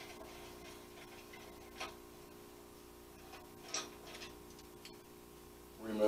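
A faint steady hum with a few small clicks as parts and tools are handled, the clearest about two seconds in and again near four seconds.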